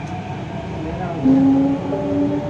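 Delhi Metro train heard from inside the carriage: a steady low rumble, joined just over a second in by a steady humming tone.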